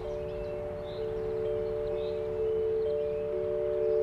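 Soft background music of overlapping, held chime-like notes, a new note coming in about every second.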